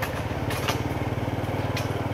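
Small motorcycle engine running steadily at low speed while riding, with an even low firing pulse and a few short ticks over it.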